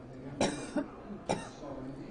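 A man coughing twice into a handheld microphone, two short coughs about a second apart.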